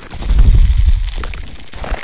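Cinematic logo-reveal sound effect: a deep, rumbling boom that swells about half a second in and dies away, with a faint high shimmer over it.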